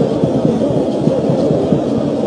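Steady crowd noise from the stands of a football stadium, a dense low din with no clear words or single events standing out.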